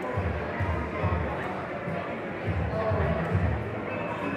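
Indistinct chatter of people talking in the background, over a regular low thumping, about two to three beats a second.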